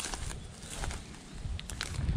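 Footsteps and camera-handling noise while walking through a vegetable plot, over a low rumble, with a few faint clicks near the end.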